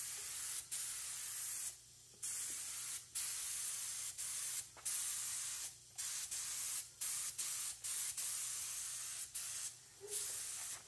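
Compressed-air gravity-feed spray gun hissing as it sprays frame coating, in a string of short bursts, each up to about a second and a half long, as the trigger is pulled and let go.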